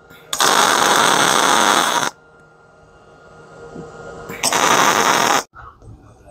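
MIG welder arc crackling in two short bursts, the first lasting nearly two seconds and the second about a second, as tack welds are laid on steel gussets of a plate.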